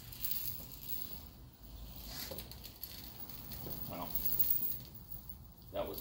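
Microfiber towel rubbed over a car's painted hood, a soft hissing rub as a spray detailer is buffed off.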